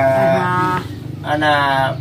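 A cow mooing twice nearby, two long, steady calls with a short gap between them.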